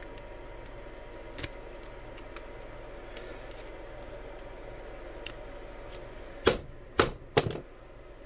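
Pliers clicking against the metal end bell of a Traxxas 380 brushless motor as it is pried off during teardown: a few faint clicks, then three sharp metallic clicks near the end. A low steady hum runs underneath.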